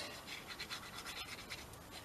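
Plastic nozzle of a tacky glue bottle scraping faintly over paper as the glue is spread out to the edges.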